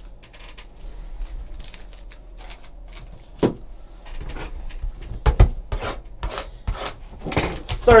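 Hands handling sealed trading-card boxes on a tabletop: a run of short clicks, taps and knocks, sparse at first and coming more often in the second half as a box is picked up.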